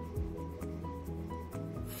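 Soft background music with sustained low notes, under a light rubbing sound close to the microphone.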